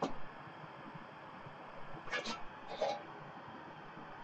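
Sheet-metal cover of a Commodore 2031 disk drive being lifted open: a click at the start, then two short scrapes a little over two seconds in.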